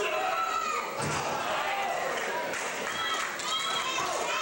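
A wrestler hitting the ring canvas with a heavy thud about a second in, amid crowd shouting and high-pitched yells.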